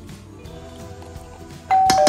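Soft background music, then near the end a sudden loud two-note ding-dong chime, high note first, then a lower one, both ringing on. It is a notification-bell sound effect.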